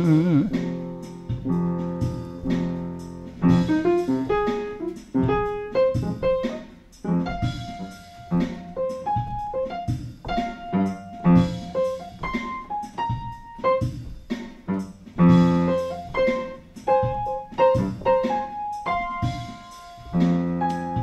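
Upright acoustic piano playing a solo instrumental passage in a bluesy style: a melody of struck single notes over lower chords, each note ringing and dying away.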